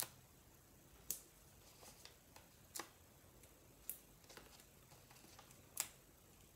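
Faint, sharp ticks of paper and foam adhesive, about five spread a second or more apart, as foam adhesive dimensionals are peeled from their backing sheet and pressed onto cut-out cardstock pieces.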